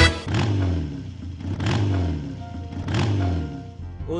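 An engine revved three times, about a second and a half apart, each rev falling away in pitch, over background music.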